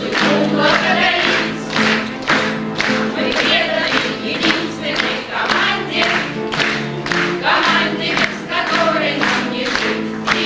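A group of people singing a song together, with steady clapping in time, about two claps a second.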